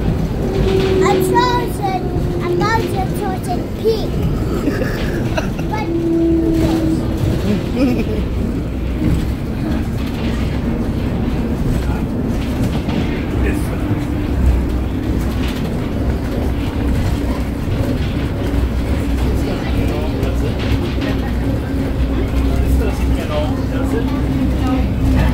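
Monorail car running along its track, heard from inside the cabin: a steady low rumble, with a steady hum that becomes clearer about halfway through.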